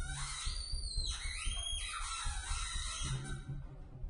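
Cello played in high, whistle-like tones that glide upward near the start, then hold and step between pitches, in an improvised piece.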